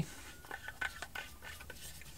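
Pressure gauge being screwed by hand into a black plastic irrigation pipe fitting: faint, irregular little clicks and scrapes of the threads turning.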